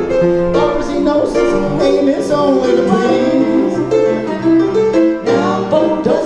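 Upright piano playing a song, a steady run of chords and melody notes with no break.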